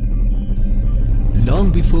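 Background music with a deep, steady low drone and held bass tones. A man's narration starts near the end.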